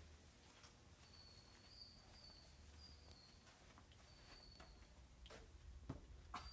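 Near silence: room tone with a low hum, a few faint ticks, and a faint, thin high whine that comes and goes.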